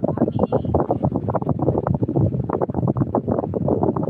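Loud, rough rumbling noise on a phone's microphone, with dense flickering crackle and no clear words.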